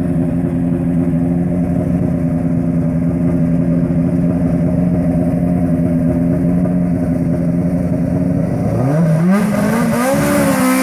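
Ford Escort race car's engine idling steadily at the start line, then near the end its revs climb sharply as it launches, with a brief dip and a second climb.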